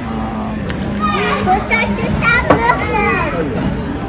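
High-pitched children's voices chattering and calling out over a steady low hum, with one sharp click about two and a half seconds in.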